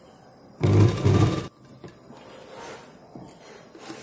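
Domestic sewing machine stitching through blouse fabric in one short run of about a second, then stopping, with faint fabric handling after.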